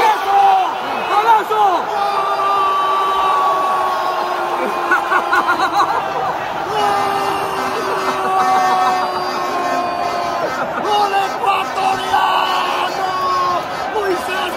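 Football commentator's goal call, his voice held on long drawn-out notes in three breaths of several seconds each, over a room of fans shouting and cheering.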